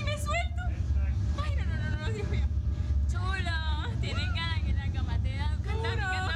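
Young women talking to each other over a steady low rumble.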